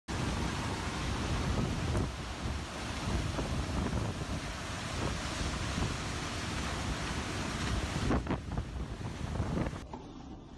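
Tornado-force storm wind blowing hard with heavy rain, buffeting the microphone in a dense, steady rush, with a few short knocks in the last two seconds.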